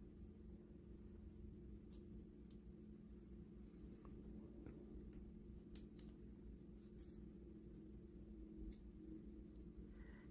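Near silence with a few faint, scattered clicks of small plastic toy parts being swung and snapped into place as a cassette-sized Rumble Transformers figure is transformed by hand. A low, steady hum sits under them.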